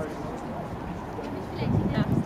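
Faint background voices of people talking outdoors, with a low rumble on the microphone that grows louder near the end.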